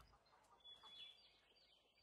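Near silence, with a few faint, short high chirps about a second in.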